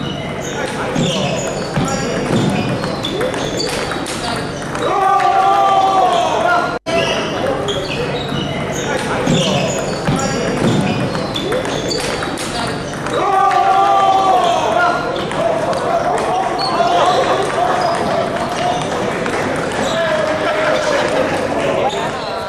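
Table tennis rally: a ping-pong ball clicking against paddles and the table, over and over, with voices calling out loudly twice along the way.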